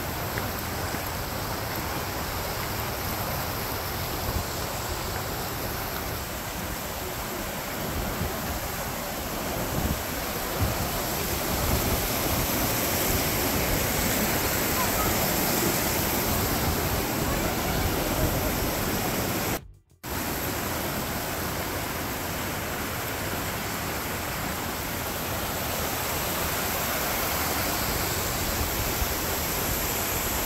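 Mountain river rushing and cascading over granite boulders: a steady, even rush of water, broken by a brief silent gap about twenty seconds in.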